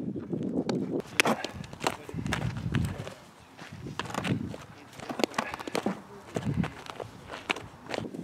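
Footsteps on infield dirt as a softball player shuffles and moves to field, with a scattering of sharp clicks and knocks among them.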